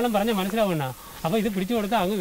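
Speech: a man talking, with a brief pause about a second in.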